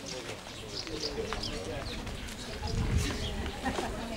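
Indistinct background chatter of several people talking, with a brief low rumble on the microphone about three seconds in.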